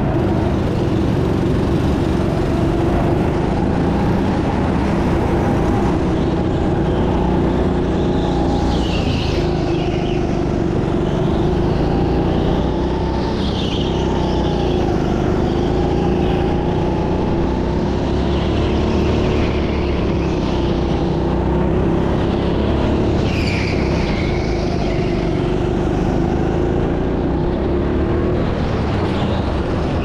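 Rental go-kart running continuously on track, heard loud and close from the driver's seat: a steady drone with its pitch shifting a little, and higher wavering squeals coming and going in the middle.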